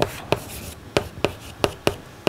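Chalk writing on a blackboard: a series of sharp taps as the chalk strikes the board, with light scraping between the strokes.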